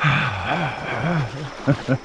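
A man laughing without words, a quick breathy run of short rising-and-falling syllables, about four or five a second.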